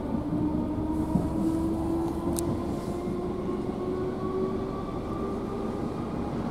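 Inside a Class 313 electric multiple unit gathering speed: a steady rumble of wheels on rail, with a motor whine whose pitch rises slowly as the train accelerates. A single sharp click sounds about two and a half seconds in.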